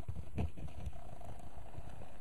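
A tool tapping rapidly on the new foam surround of a woofer, making quick, dull low thumps as the surround is pressed onto the cone while the glue sets.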